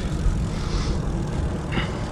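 Low, steady rumble of wind on the microphone and tyres rolling on concrete as a recumbent trike is ridden along.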